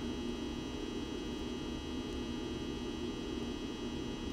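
Steady background hum with a faint hiss, unchanging throughout, with no other sound standing out.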